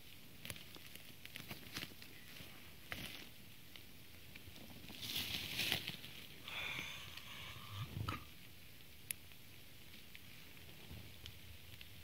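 Footsteps and rustling on the forest floor among young pines: scattered faint snaps and crackles of twigs and dry leaves, with a louder brushing rustle about five seconds in and a shorter one a couple of seconds later.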